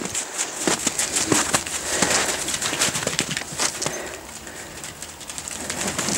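Domestic geese flapping their wings and scuffling on wet ground, a dense run of irregular flaps and scrapes.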